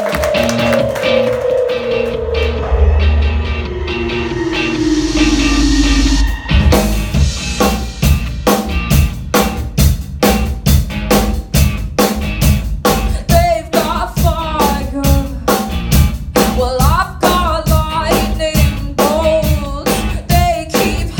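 Live pop-rock band starting a song: a long tone falls steadily in pitch over a low bass swell, then about six seconds in the drum kit comes in with a steady beat alongside bass, guitar and keyboard. A woman's lead vocal enters about halfway through.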